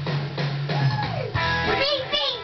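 Rock music with guitar, bass and drums playing loudly, with a voice coming in near the end.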